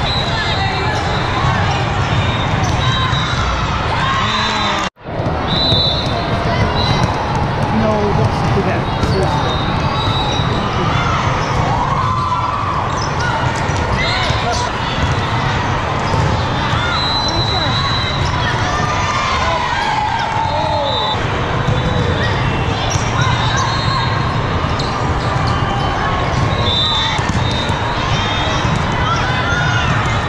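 Indoor volleyball play in a large hall: the ball being hit, sneakers squeaking on the court, and a steady babble of many players' and spectators' voices. The sound drops out briefly about five seconds in.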